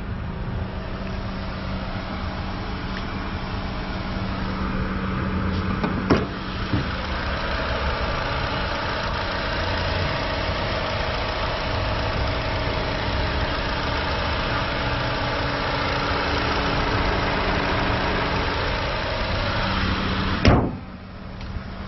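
2017 Honda Civic's four-cylinder engine idling steadily with the hood open, growing a little louder over the first ten seconds. A single sharp click about six seconds in.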